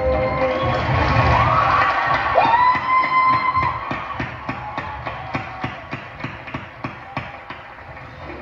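A marching band's held chord dies away and the stadium crowd cheers, with whistles rising over it; from about three seconds in, a steady tapping beat of about three a second takes over while the cheering fades.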